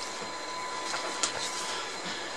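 Steady background hiss with a faint, steady test tone near 1 kHz and its overtones running under it. A short rustle of a paper sheet about a second in.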